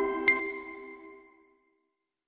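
A bright chime struck once about a third of a second in, over the last held notes of a logo jingle, the whole ringing out and fading to silence within about a second and a half.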